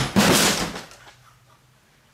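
A large flat-screen TV dropped onto the floor: a loud crash and clatter that dies away within about a second, leaving the set broken.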